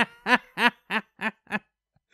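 A man laughing: about six short "ha" pulses, roughly three a second, growing fainter and stopping about a second and a half in.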